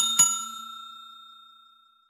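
Notification-bell sound effect: two quick bell dings, the second about a fifth of a second after the first, then a clear ring that fades away over about a second and a half.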